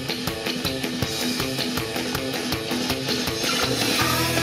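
Instrumental intro of an upbeat idol pop song, with fast, steady drum beats and electric guitar.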